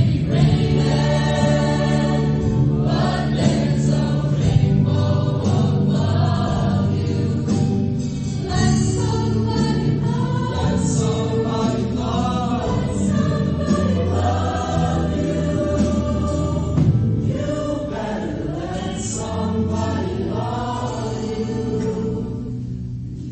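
Mixed-voice high-school show choir singing together, loud and steady.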